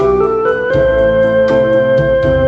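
Electronic arranger keyboard playing a slow rock tune live, with held chords and a melody over the keyboard's automatic style accompaniment. A steady beat of about four strokes a second runs under it.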